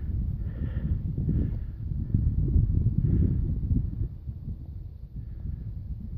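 Wind buffeting the microphone: a low, uneven rumble that rises and falls.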